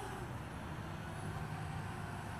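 A steady low rumble with a soft hiss over it, even in level throughout.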